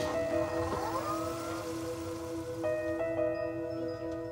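Electronic synthesizer music of sustained held chords, with the notes changing a few times and a brief swooping, rising glide about a second in.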